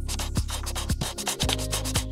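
Rapid scratchy strokes like a pencil sketching, from an animated logo sting, over music with a steady low bass and a beat about twice a second.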